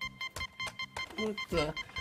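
Digital alarm clock beeping in rapid, even pulses.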